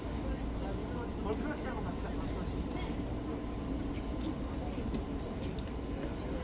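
Crowd of fans chattering with no single voice standing out, over a steady low city rumble, with a few faint clicks near the end.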